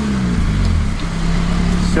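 Homemade off-road buggy working through a winch pull: a motor hum drops in pitch and dies away within the first second, leaving a steady running hum.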